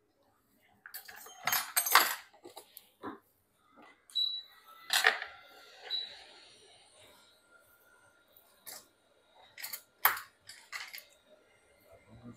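Handling noise at a repair bench: scattered sharp clicks and light clatter of small tools, in short clusters, loudest about two seconds in and again around five and ten seconds, with a soft rustle in between.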